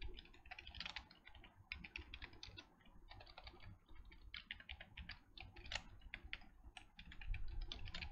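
Faint computer keyboard typing: quick runs of keystrokes with short pauses between them.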